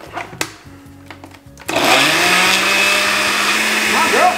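A countertop glass-jar blender: a few small clicks as it is set up, then about two seconds in the motor starts and runs loud and steady, its hum rising in pitch as it spins up. The blades spin without drawing the chiles down: there is too little liquid in the jar for the sauce to blend.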